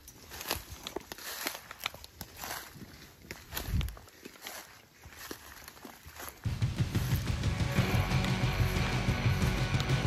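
Footsteps crunching through dry fallen leaves, a scatter of crackles and rustles. About two-thirds of the way in, louder background music starts and carries on.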